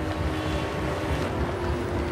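Steady low rumbling noise, like wind or distant city ambience, with a faint held tone.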